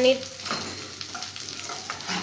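Chopped onions frying in oil in a kadhai, a soft steady sizzle, with a metal spatula stirring and scraping against the pan.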